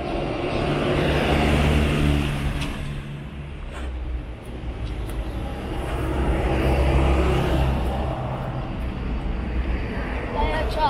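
Road traffic passing on a city avenue: engine hum and tyre noise swell as vehicles go by, loudest about two seconds in and again about seven seconds in, the second swell as a bus drives past.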